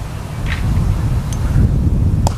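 Wind buffeting the camera microphone in a strong gale, a loud, steady low rumble.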